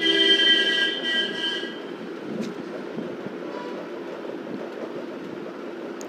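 A horn-like sound, several steady tones held together for about two seconds, loudest at the start and fading, followed by a steady low background noise.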